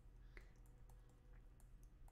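Near silence with a few faint, scattered clicks from the input device used to draw on a computer.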